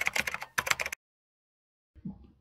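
Rapid clatter of computer-keyboard typing, a sound effect over an animated logo, stopping about a second in.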